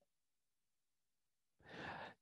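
Near silence, then a man's short intake of breath near the end.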